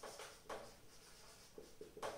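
Marker pen writing on a whiteboard: a few faint, short strokes, the clearest about half a second in.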